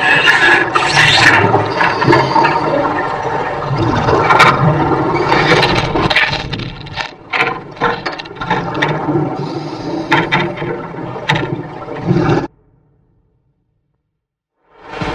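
Underwater water noise and bubbling picked up by a submerged camera, with scattered clicks and knocks. It cuts off suddenly near the end.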